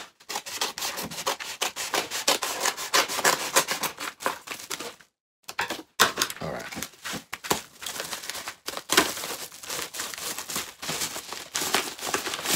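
Scissors cutting open a padded paper mailer, a quick run of snips and scrapes with a short pause about five seconds in.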